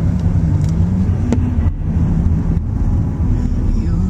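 Car engine and road noise heard from inside the cabin as the car drives slowly, a steady low drone, with a brief click about a second in.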